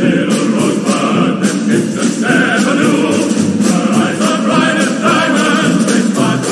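Background music: a choir singing a steady, continuous song.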